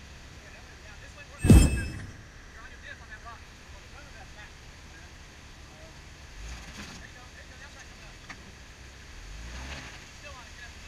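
Low rumble of off-road vehicle engines, swelling briefly twice, broken about a second and a half in by one sharp, loud bang with a short metallic ring.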